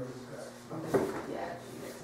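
People talking in a room, with a brief knock about a second in, as of a drawer or cupboard being shut.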